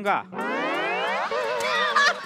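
A comic sound effect: a rising, boing-like glide lasting about a second, followed by a wobbling, warbling tone. A voice is heard briefly at the very start.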